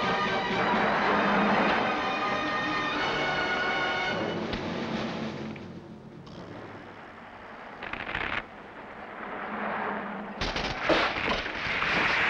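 Film background music that thins out about halfway through. A brief crack comes about eight seconds in, then a loud run of cracking and crashing near the end as a large tree falls across a road.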